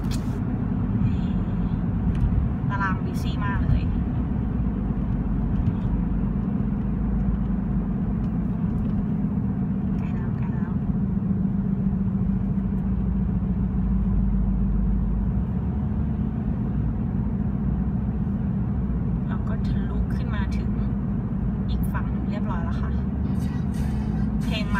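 Steady road and engine noise from inside a car driving through a road tunnel, with a low drone.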